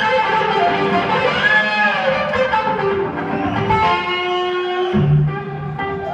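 Live band music dominated by an electric guitar playing lead lines with bent, gliding notes. Deep bass notes come in about five seconds in.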